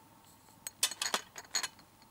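A small glass spice jar clinking as it is handled and opened: a quick run of about five sharp clicks about a second in.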